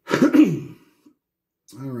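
A man clears his throat once, loudly and roughly, in the first second.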